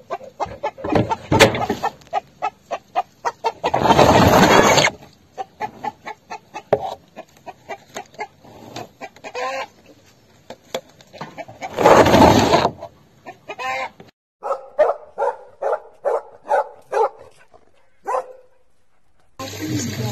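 Chickens clucking in quick runs of short calls, with two louder, longer calls about four and twelve seconds in. Near the end comes a run of evenly spaced clucks, about two a second.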